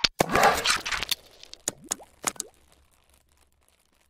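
Animated logo-intro sound effects: a sharp click, a loud whooshing burst lasting about a second, then a few quick pops with short rising tones that fade out by about three seconds in.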